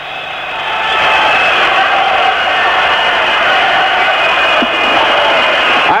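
A large stadium crowd of Rangers supporters singing together, celebrating a goal just scored. The sound swells over the first second and then holds loud and steady.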